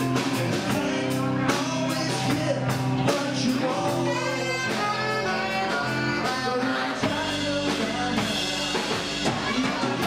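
Live blues-rock band playing: electric guitar and drum kit with a man singing into the microphone, at a steady level throughout.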